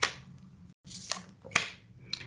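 Tarot cards being shuffled and drawn by hand: a few short, sharp card snaps, the sharpest right at the start, with faint rustling between.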